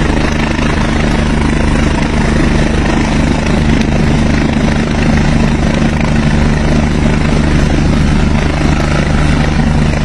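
Helicopter hovering at close range, its rotor and engine running loud and steady with an even low drone.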